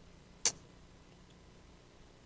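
Quiet studio room tone, broken once about half a second in by a single short, sharp, high-pitched click.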